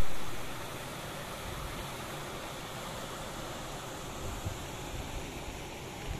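Water rushing steadily along a concrete-lined irrigation canal, just released into it through the sluice outlets. It starts louder and settles within about half a second to an even rush.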